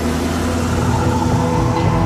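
Tense drama soundtrack: a low, steady rumbling drone under held chords, slowly swelling in loudness.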